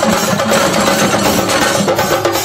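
Chendamelam: a group of chenda drums played together with sticks, a dense, rapid and unbroken stream of strokes on the cylindrical wooden drums, loud throughout.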